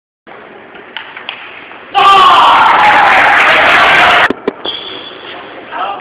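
Spectators in a large hall shouting and cheering loudly for about two seconds, stopping abruptly. Before and after the cheer come a few sharp clicks of a table tennis ball over a quieter crowd hubbub.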